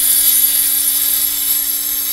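Angle grinder cutting along the centre of a hard mortar joint between bricks to loosen the mortar: a steady, high-pitched whine with a grinding hiss.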